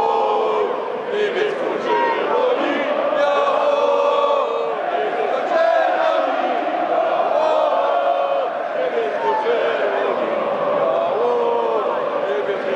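A stadium crowd of football supporters chanting and singing together in unison, a massed sung chant with no pause.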